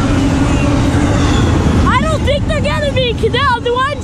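CSX double-stack intermodal freight train passing close by: the steady rumble and rolling noise of its wheels on the rails. A high-pitched voice joins about halfway through.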